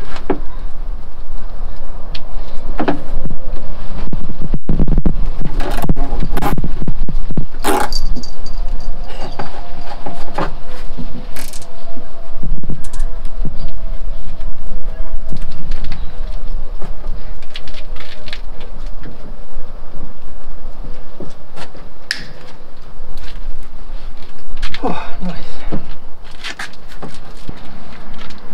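Hammer tapping small steel nails into a plywood boat hull panel, in irregular strikes with a quick run of blows a few seconds in and scattered taps later.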